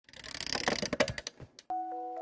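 A quick run of computer-keyboard typing clicks for about a second and a half. Near the end a bell-like mallet-percussion note starts ringing as music begins.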